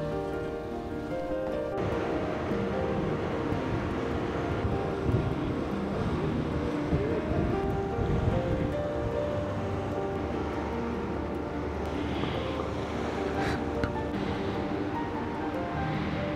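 Background music over the steady rush of churning sea water in a ferry's wake, which comes in about two seconds in.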